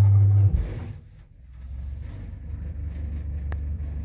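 Otis elevator car setting off upward. A loud low hum stops suddenly about half a second in, and after a brief lull the low, steady rumble of the car travelling builds up. There is a single sharp click near the end.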